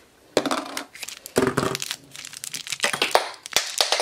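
A small hard-plastic toy container clicking and clattering as it is handled and falls off a desk, with a louder knock about a second and a half in and several sharp clicks later on.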